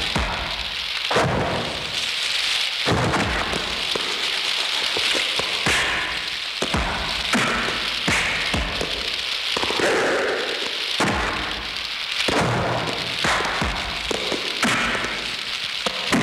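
Film fight soundtrack: repeated punch and kick impact effects, roughly one a second, over the steady roar and crackle of a room fire, with background music.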